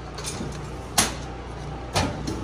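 Steel drawer of a Harbor Freight Vulcan welding cart being slid shut, with a sharp clack about a second in and another, smaller click near the end.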